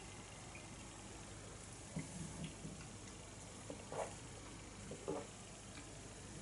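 Faint room tone with a few soft, short mouth sounds of a person sipping and swallowing beer from a glass, about two, four and five seconds in.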